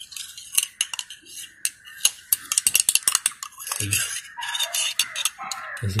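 Thin metal spatula stirring liquid in a small glass tumbler, clinking against the glass in quick, irregular clicks that come thickest about two to three seconds in.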